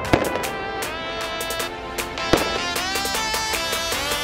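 Background music with firework bangs and crackles going off under it at irregular moments. One louder bang comes a little past two seconds in.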